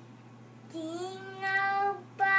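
A young child singing one long held note that rises slightly in pitch, starting under a second in.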